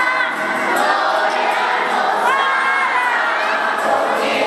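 A group singing a lively posada song together over crowd noise.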